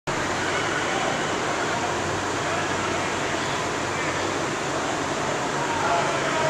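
Steady air-handling noise filling a large indoor practice hall, with a faint low hum under it and distant indistinct voices of players and coaches.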